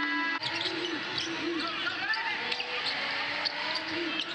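Live basketball game sound: sneakers squeaking on the hardwood court and a ball being dribbled over a steady crowd murmur in a large arena.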